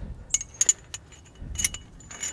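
Steel pieces of a brake caliper piston tool kit clinking against each other as they are handled and fitted together: a few sharp metallic clinks with a short ring, in a cluster about half a second in and another about a second and a half in.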